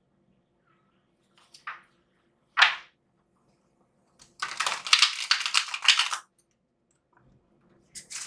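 A deck of cards being shuffled by hand: two brief swishes, then, about four and a half seconds in, a riffle shuffle, a rapid run of card clicks lasting under two seconds.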